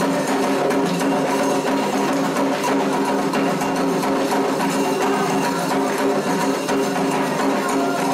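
Candomblé ritual percussion: atabaque hand drums and a struck bell playing a steady, driving toque for the orixás' dance.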